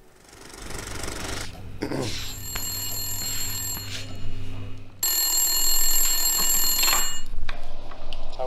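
Old-fashioned telephone bell ringing with a bright metallic jangle. It starts about two seconds in, gets louder about five seconds in, and stops about seven seconds in.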